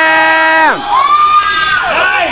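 Loud shouting and cheering for a 455 lb front squat as the lifter stands up: one long held yell that drops away sharply about three-quarters of a second in, followed by more yelling.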